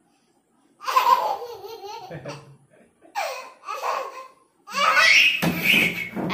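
A baby laughing in three bursts, with short pauses between them.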